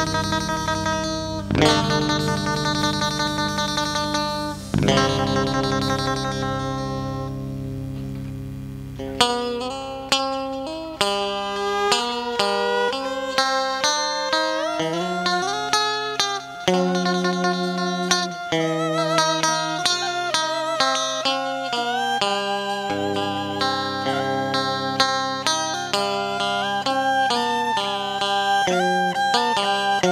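Vietnamese funeral band (nhạc hiếu) music led by a plucked string instrument, guitar-like. It plays struck chords over a held low note for the first several seconds, then a slow melody with sliding, bent notes.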